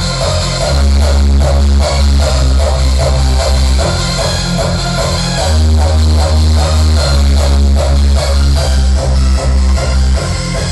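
Hardstyle electronic music at 151 BPM: a heavy, distorted raw kick drum on a steady driving beat under a synth melody.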